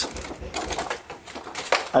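Cardboard lid of a trading-card factory-set box lifted and slid off, giving irregular scraping and rustling, with a sharp click near the end. Background noise from renovation work is mixed in.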